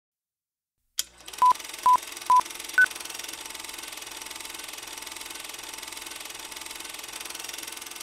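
Four short electronic beeps about half a second apart, three at the same pitch and the fourth higher, like a countdown, followed by a steady hiss.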